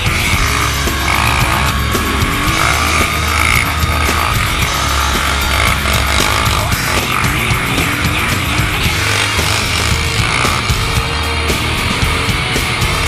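Loud heavy rock music with a steady beat.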